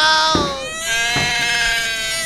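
A woman's exaggerated, high-pitched wailing cry in long drawn-out notes: one wail trails off just under a second in and a second long wail follows.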